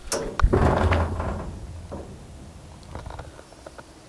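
A sharp knock about half a second in, followed by a rumbling scuffle that fades over a second or so, then a few faint clicks.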